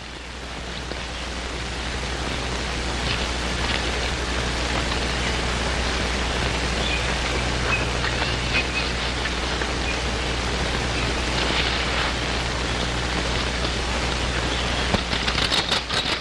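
Steady hiss and low hum of an old optical film soundtrack, swelling up over the first couple of seconds, with a cluster of crackles near the end.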